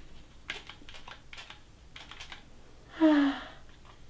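A trigger spray bottle squirting water in a quick series of short hissing sprays, several in the first two and a half seconds. Near the end, a short vocal cry with a falling pitch.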